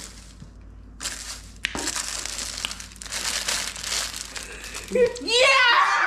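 Gift wrapping and a paper gift bag rustling and crinkling as a present is pulled out, with one sharp crack about two seconds in. Near the end, excited repeated shouts of "Yeah!"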